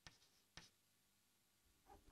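Near silence, with two faint taps of chalk on a blackboard in the first second as a number is written.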